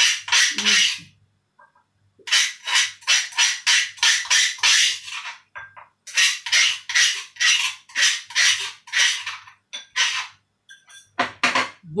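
Pestle working in a mortar: quick, sharp strokes about four a second, in three runs with short pauses between them.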